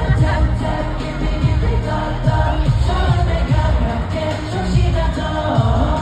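Live K-pop song played over an arena sound system: voices singing over a pop backing track with a heavy, steady bass beat, heard from far back in a large arena.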